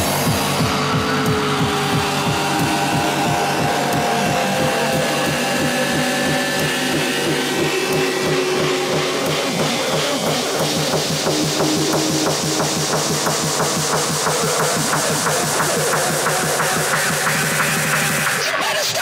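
Hardcore electronic music played from DJ decks: a fast, steady kick drum, with held synth tones over it in the first half.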